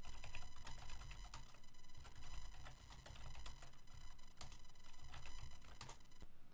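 Typing on a computer keyboard: a run of irregular keystrokes, entering DiskPart commands in a command prompt. A faint steady hum sits underneath.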